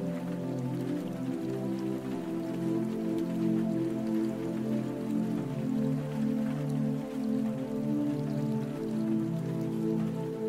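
Slow, calm instrumental music with long held notes, over a light patter of water drops.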